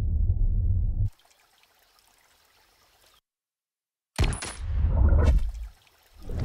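Muffled underwater rumble that cuts off about a second in. After a few seconds of near silence, a loud rush and splash of water comes in just after four seconds and lasts over a second.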